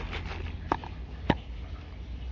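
Plastic hand-pump pressure sprayer being shaken to mix the herbicide, with two sharp clicks a little over half a second apart, the second louder.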